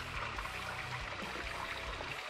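Small forest stream trickling steadily, an even running-water sound.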